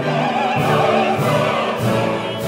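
Operatic ensemble: male chorus voices singing with a full orchestra, the sung notes carrying a wide vibrato.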